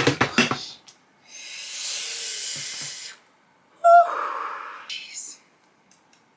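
A woman's pained vocal sounds while waxing her underarm: a gasp, a long hiss, then a short sudden high-pitched cry about four seconds in.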